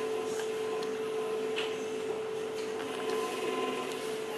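Room tone: a steady machine hum at one even pitch, with faint voices in the background.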